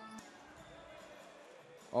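Faint ambience of an indoor basketball game between plays: a low, steady murmur of the court and the sparse crowd in the hall.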